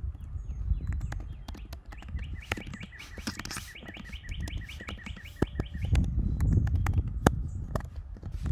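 Computer keyboard keys clicking in irregular runs as a message is typed. A bird sings a rapid series of repeated chirps, about seven a second, from about two seconds in until near six seconds, over a low rumble that grows louder near the end.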